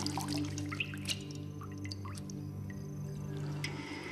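A held, sustained low music chord, with scattered small drips and splashes of water in a glass bowl as hands are dipped and washed in it.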